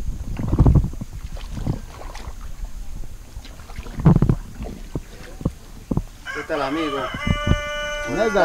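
A rooster crowing: one long call that starts about six seconds in with a wavering rise, holds a steady note and carries on past the end. Before it come a few scattered knocks.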